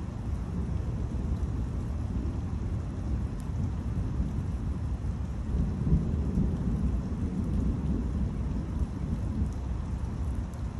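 Thunder rumbling after a lightning flash, swelling to its loudest about halfway through and then rolling on, over a steady hiss of rain.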